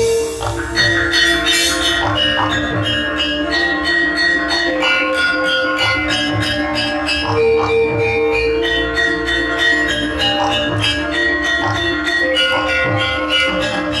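A Javanese gamelan ensemble playing an instrumental piece. Bronze metallophones and gongs ring in layered, sustained bell-like tones over a steady, even pulse of strokes.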